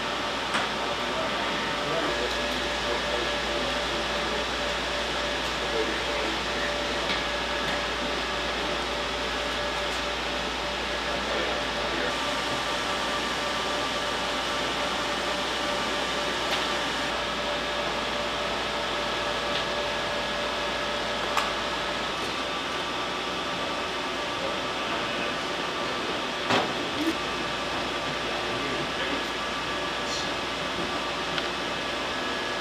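Steady whir of cooling fans and air handling in a drone ground control station, with faint steady electronic tones under it and a few light clicks in the second half.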